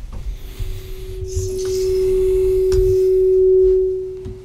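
A single held pure tone, mid-pitched, that swells slowly to its loudest near the end and then fades away, over a low rumble.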